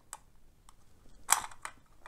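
Light plastic clicks from a Hornby OO-gauge model wagon as its plastic body is eased off the underframe's clips, with one sharper snap about two-thirds of the way through.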